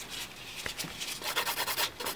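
Hand nail file rasping over a gel nail in quick back-and-forth strokes. The strokes grow louder about a second in.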